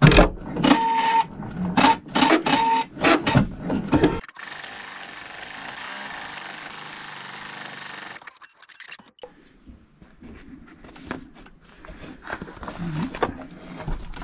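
Computerised embroidery machine stitching out an underlay: a rapid run of needle clicks and mechanical knocks for the first few seconds, then a steady hiss, then quieter stitching clicks building again near the end.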